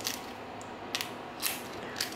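Three short clicks as a key and an aluminium-bodied cable lock are handled together.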